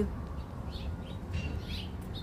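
A few faint, short chirps from small birds, over a low rumble of the camera being handled.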